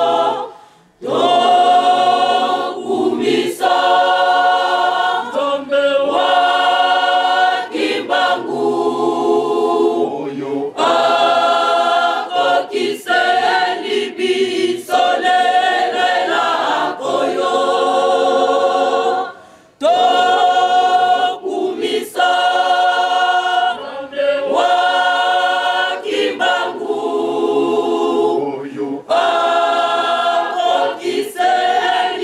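A large crowd of men and women singing together as a choir in long sung phrases, breaking off briefly about a second in and again about two-thirds of the way through.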